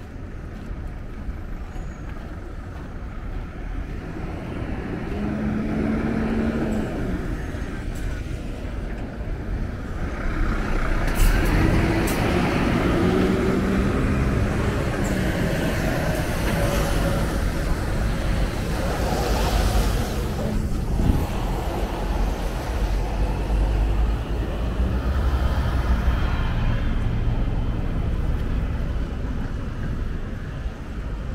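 Road traffic with a heavy diesel truck driving past close by, its low engine rumble growing louder about ten seconds in and staying up.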